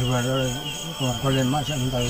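A man talking in short phrases, with crickets chirping steadily in a fast even trill in the background.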